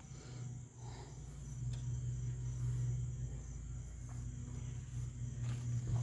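Insects chirping in a faint, evenly pulsing high tone over a low steady hum.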